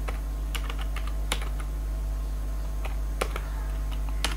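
Computer keyboard being typed on, keys clicking in short irregular runs as a word is typed out, over a steady low hum.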